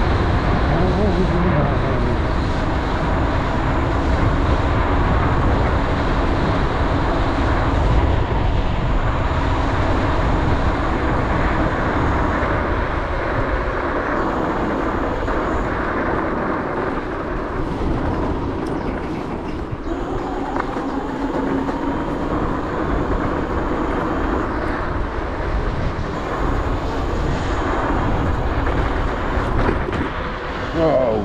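Dualtron Thunder electric scooter riding along a rough lane: steady wind noise on the microphone and tyre rumble, with a faint hub-motor whine that drifts up and down in pitch with speed.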